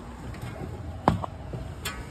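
Two sharp clicks of handling inside a metal exhaust-fan housing, one about a second in and one near the end, over a low steady background.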